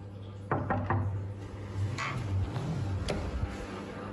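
Knocks and bumps on a wooden door: three quick ones about half a second in, then a few more spread through the rest, over a steady low hum.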